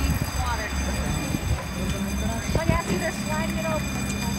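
Several people chatting close by, with a steady low mechanical hum underneath.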